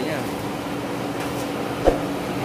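Steady rushing noise with a low hum from a kitchen gas stove burning under a pan of sauce. A single short knock comes near the end.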